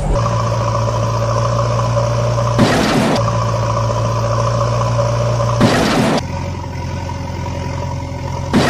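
Truck engine idling steadily, with a loud rushing hiss breaking in twice, a few seconds apart.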